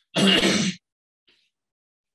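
A man coughs once, a single short harsh cough.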